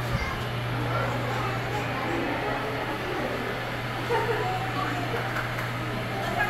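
Indistinct chatter of other visitors in an indoor exhibit corridor over a steady low hum.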